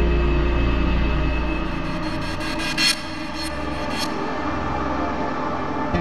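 Background score of a TV drama: held sustained notes over a low drone, with a few sharp hits in the middle, the loudest a little under three seconds in.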